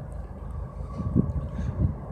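Wind buffeting the phone's microphone: a low, uneven rumble, with a faint steady hum above it.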